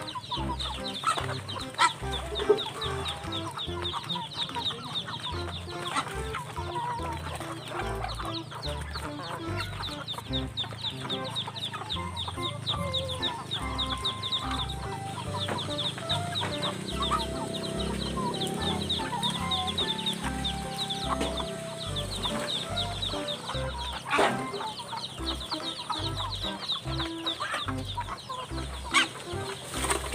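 Chickens clucking as they feed together from a bowl, over background music.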